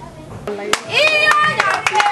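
Women singing in high voices with rapid hand clapping, starting loudly about a second in after a quiet moment.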